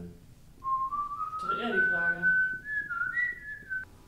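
A person whistling a short tune, the pitch climbing in steps over about three seconds before stopping. A brief vocal sound comes in partway through.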